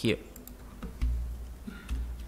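Computer keys clicking a few times as a spreadsheet formula is entered, with two dull low thumps about a second in and near the end.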